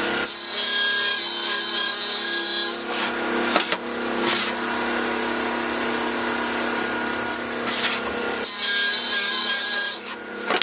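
Table saw running steadily and ripping sheets of MDF, the sound of the cut shifting twice as passes end and the next begins.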